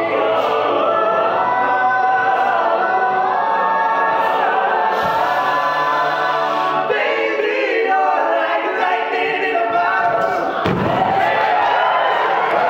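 All-male a cappella group singing a pop song in full close harmony, with a low sung bass line under the chords that drops out about seven seconds in. A low thud comes near the end.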